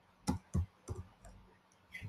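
Computer keyboard typing: about five separate, light key clicks with short irregular gaps.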